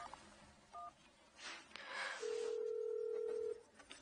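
A phone keypad beeps once as a number is dialed, then a steady telephone ringing tone on the line sounds for about a second and a half.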